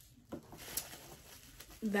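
Quiet handling noise: a few light clicks and faint rustling as a hot comb and its cord are moved over bubble-wrap packaging, with speech starting again near the end.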